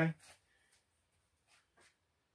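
A man's voice says a brief "okay?", then near silence broken only by a few faint, small clicks.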